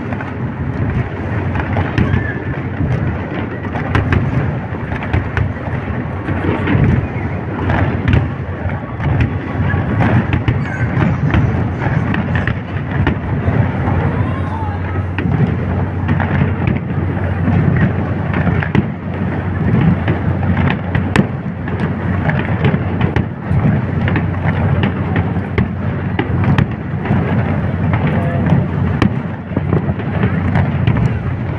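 Aerial fireworks going off continuously: many sharp bangs and crackles over a steady low rumble of distant booms.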